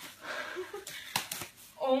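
Plastic wrapping rustling and crinkling as it is pulled open, with two sharp snaps a little after a second in.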